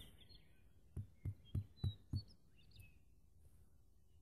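A hand tapping on dry, sandy ground, five quick knocks about three a second starting about a second in, sounding the ground for a hollow spot. Faint bird chirps in the background.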